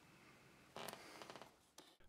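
Near silence with a faint rustle of fingers swiping across the iPad's glass touchscreen. It lasts under a second, starting a little before the middle.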